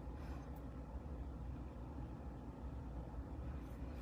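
Quiet room tone with a low steady hum and no distinct sound event.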